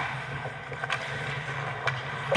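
Ice hockey game sounds close to the net: skates scraping the ice and two sharp clacks about a second apart, over a steady low hum.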